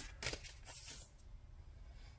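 Faint rustle and a few light clicks of a tarot card being drawn from the deck, mostly in the first second.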